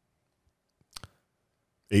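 A single short, sharp click about a second in, in an otherwise quiet small room; a man's voice starts just before the end.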